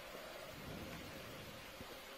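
Faint steady hiss with a low rumble: the background noise of an open communications audio feed between calls.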